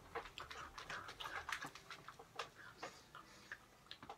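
Ice cream being eaten with a metal spoon from a glass dessert bowl: faint, scattered clicks and scrapes of the spoon against the glass.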